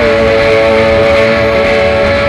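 Live worship band playing: guitars strummed over drums, with one long held note sustained through the whole stretch.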